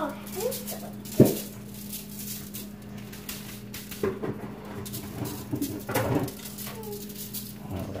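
Seasoning shaker bottle shaken over raw ground meat in a run of light rattles, with one sharp knock about a second in. Hands then pat the seasoning into the meat. A steady low hum sits underneath, and short voice-like sounds come and go in the background.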